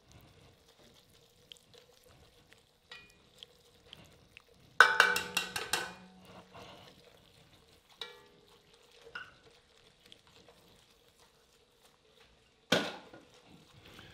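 Wire whisk stirring flour into melted butter in an enamelled cast-iron pot, making a roux. Soft scraping throughout, with a loud rapid rattle of the whisk clinking against the pot about five seconds in and a single ringing clink near eight seconds.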